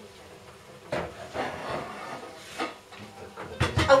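Pots and kitchenware being moved about in a low kitchen cupboard: scattered knocks and scraping, with a cluster of sharper knocks near the end as a pot is pulled out.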